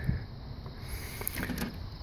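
Plastic front bezel of an IBM 3511 SCSI expansion tower being pulled off its case: a sharp click at the start, then a few faint clicks and light rattles, over low steady outdoor background noise.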